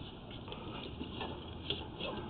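Faint, scattered ticks and light clicks from a sewer inspection camera rig being handled as the camera is moved back through the line, with one sharper click near the end over a low hum.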